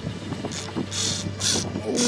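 Fishing reel whirring in short bursts about twice a second while a hooked hybrid bass is fought on the rod, over a steady low hum.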